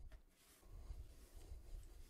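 Near silence, with faint soft rubbing twice as hands drag and round a ball of sourdough on a floured counter.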